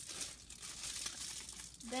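Packaging crinkling and rustling as items are handled and pulled out of a gift box.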